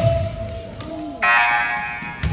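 A basketball thuds on the gym floor at the start. About a second in, a loud buzzing horn from the gym's scoreboard sounds and fades out within a second.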